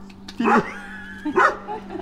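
A dog barking: short barks about a second apart.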